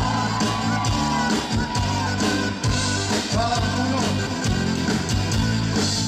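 Live band playing pop-rock music: drum kit with regular strokes, bass guitar and keyboard, with a man singing over it.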